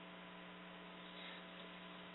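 Faint, steady electrical hum with a low buzzing tone and a few fainter overtones over light hiss, heard in a gap between words on a narrow-band broadcast line.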